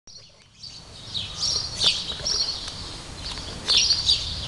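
Small birds chirping again and again in quick high calls, over a steady low rumble.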